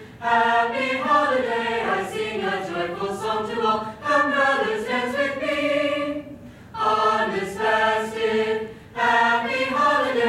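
Mixed-voice high-school choir singing a Hanukkah song in harmony, with a short break between phrases about six seconds in.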